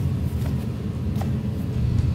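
Steady low rumble throughout, with a couple of faint soft ticks as the pages of a paper notebook are turned by hand.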